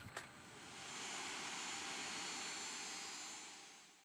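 Faint, steady hiss of airliner cabin noise from the jet engines, with a thin high whine over it; it fades in during the first second and fades out near the end.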